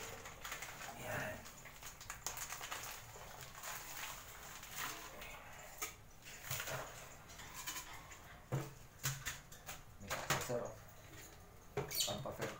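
Scattered plastic rustling and light knocks as a plastic tub of powdered vitamins and its inner plastic liner are handled, busiest near the end. African lovebirds chirp in the background.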